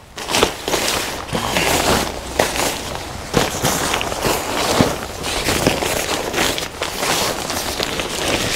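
Lightweight tent fabric and a plastic-like groundsheet rustling and crinkling as they are unfolded and spread out by hand, with frequent small crackles.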